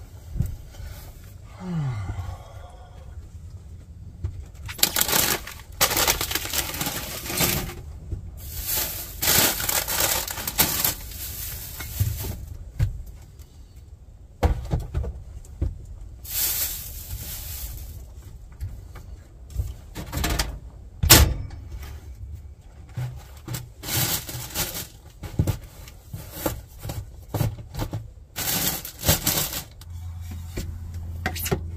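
Rustling, scraping and knocking of belongings being handled and stowed in a small camper, in repeated bursts of a second or two, with a sharp click about two-thirds of the way through.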